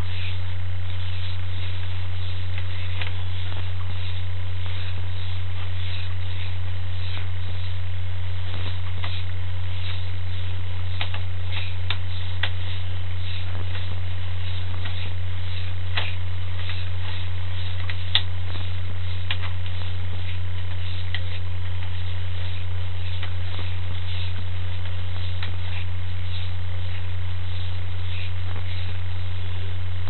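Steady low electrical hum picked up on a sewer inspection camera system's audio, with faint scattered clicks.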